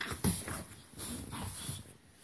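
A baby making short breathy grunts and whimpering vocal sounds close to the microphone, in a few bursts, the loudest near the start and again about a second in.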